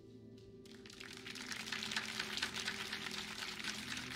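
A small group clapping, starting about a second in and swelling, over soft background music.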